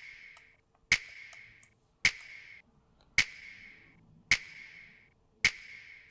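Layered hip hop clap sample played back on its own, five sharp claps about one a second, each with a short reverberant tail. Its mid band is boosted around 700–800 Hz with an EQ84 equaliser plug-in.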